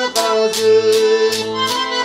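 Garmon (button accordion) playing a folk melody in held, sustained notes. Over it a wooden clapper keeps a steady beat of about three sharp strikes a second.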